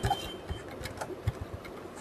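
Typing on a computer keyboard: a string of faint, irregular key clicks.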